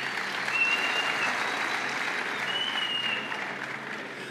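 A large audience applauding steadily, with two brief high-pitched tones heard over the clapping.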